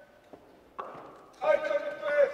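A man calling out in a raised, drawn-out voice, starting about one and a half seconds in after a near-quiet stretch.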